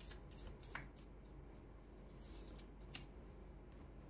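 Faint shuffling of a tarot deck in the hands: a handful of soft card clicks, most of them in the first second and a couple more later on.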